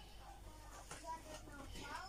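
Quiet room tone with a few faint, brief murmurs of a woman's voice.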